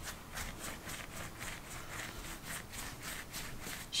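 Hands rolling a piece of soft bread dough back and forth on a plastic-coated tablecloth: a faint, rhythmic swishing rub, about four strokes a second.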